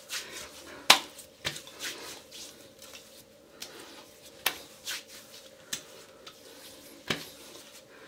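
Hands patting and slapping aftershave splash onto the face: a string of about seven sharp, irregular slaps, the loudest about a second in.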